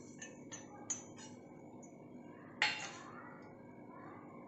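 Stainless steel kitchenware clinking as chopped green chillies are tipped from a small steel bowl into a steel mixer jar: a few light ticks in the first second, then one louder metallic clink that rings briefly, about two and a half seconds in.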